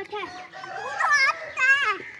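A young child shouting short calls in a high, strained voice, twice in quick succession, with the pitch rising and falling.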